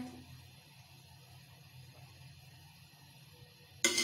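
Near silence with a faint low hum while cooked rice is stirred in a metal pot, then, near the end, a sudden scrape and clank of a metal spoon against the pot.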